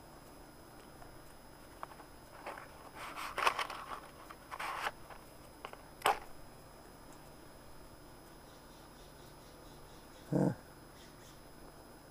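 Faint clicks and short scraping, rustling noises of charcoal briquettes being lit in a kettle grill with a long lighter, the sharpest click about six seconds in. A brief grunt of a voice comes near the end.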